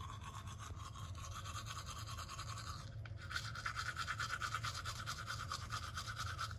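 Electric toothbrush buzzing steadily while brushing teeth. It dips briefly about halfway through, then comes back stronger.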